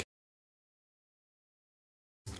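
Silence: the soundtrack drops out entirely between narration lines.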